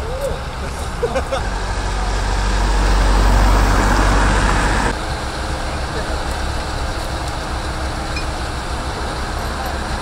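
A heavy recovery truck's diesel engine runs with a steady low hum. A louder rushing swell builds over the first few seconds and cuts off abruptly about five seconds in.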